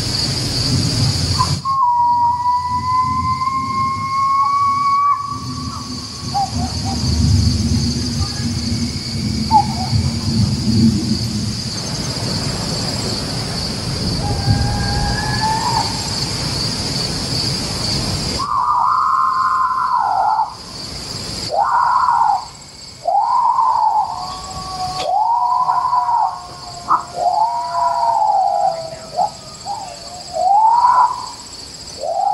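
Night field recording of animal calls, presented on the podcast as sasquatch vocalizations from Michigan. Insects chirr steadily with a low rumble under them, and a long rising wail comes a few seconds in. About two-thirds of the way through, a run of short, overlapping yipping howls begins, each rising and falling, like coyote yips.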